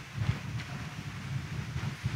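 Low rumble of a congregation sitting down in a large church, with faint shuffling and knocks of movement on the pews.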